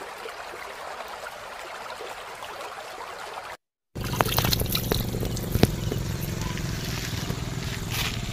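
Water trickling and splashing from cupped hands into a shallow muddy puddle, with a few sharp splashes, over a low outdoor rumble. It comes after a faint even hiss and a brief dead silence about three and a half seconds in.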